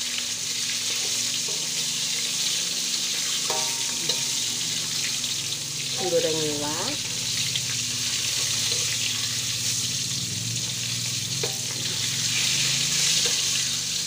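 Fish frying in hot oil in a wok: a steady sizzle.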